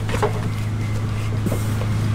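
A steady low mechanical hum, with a few faint light knocks.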